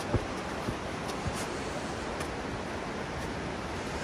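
Steady rushing of water from a nearby river or cascade, with a few soft thuds of footsteps on the dirt trail, the loudest near the start.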